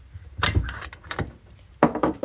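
A metal cover sliding off the pinion housing of an EG Honda Civic steering rack: a metallic scrape, a light click, then a sharp knock near the end.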